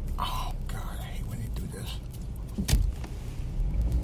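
Low road rumble inside a moving car's cabin, with a single sharp thump about three seconds in.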